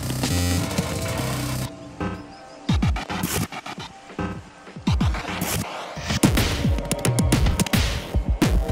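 Glitch electronic music: chopped, stuttering bursts that stop and restart abruptly, with repeated falling pitch drops in the bass.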